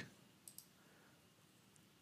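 Near silence with two faint, quick clicks about half a second in: a computer mouse being right-clicked.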